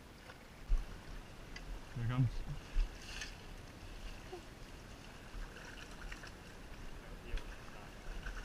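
Shallow stream water sloshing as people wade and sweep dip nets through it, with a few low thumps, the loudest about a second in and again near three seconds.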